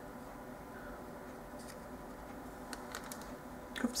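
Quiet room tone with a few faint, short ticks as a paintbrush works paint onto a small piece of painted paper held in the fingers.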